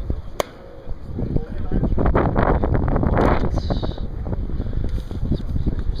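A single sharp crack of a bat striking a pitched ball about half a second in, followed by gusts of wind rushing over the microphone.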